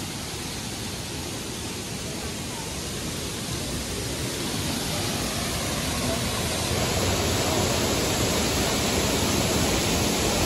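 Steady rush of a waterfall, growing gradually louder through the second half as it is approached.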